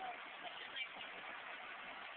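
Faint, steady outdoor street background noise, a low even hiss and hum with no distinct events.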